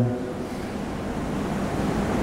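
Steady airy rush of an oscillating electric pedestal fan, growing slightly louder toward the end.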